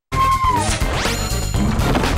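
A TV show's theme jingle starting up right after a brief dropout. It has a melodic line, a rising sweep about a second in, and a crash sound effect over the animated opening.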